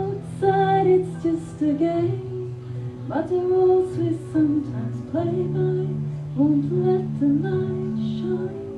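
A woman singing into a microphone, holding long notes, over a steady instrumental accompaniment of sustained low notes.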